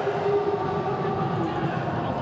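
Football stadium crowd chanting, a steady wash of many voices holding a sung note.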